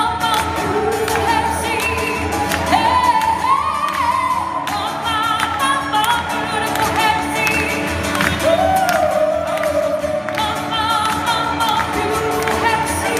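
A live band and a gospel-style backing choir performing a song: several voices singing sustained, wavering lines together over guitar accompaniment, loud and continuous.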